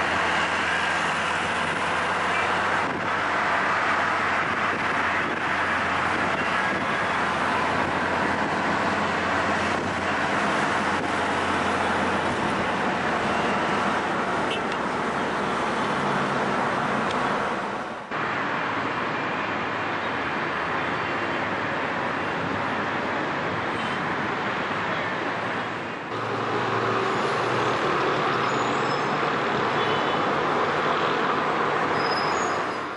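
Steady road traffic noise of cars on a busy multi-lane road, heard from a moving car. The sound changes abruptly twice, about 18 and 26 seconds in.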